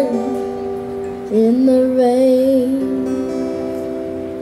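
A boy's voice sings a long held note with vibrato over an acoustic guitar, then a final guitar chord is left ringing and slowly fading as the song ends.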